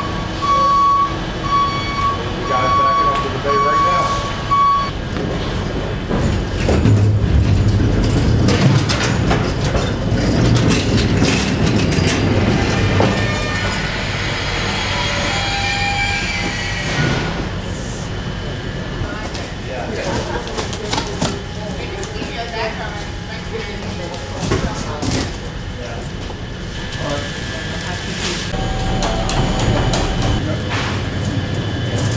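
Loading-dock work as a crated ultra-cold freezer is moved on a pallet jack. A steady beeping alarm sounds for the first few seconds, then knocks, rattles and scrapes ring out over a low hum, with people talking indistinctly.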